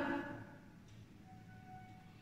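The tail of a spoken phrase, then quiet room tone with a faint thin tone in the second half.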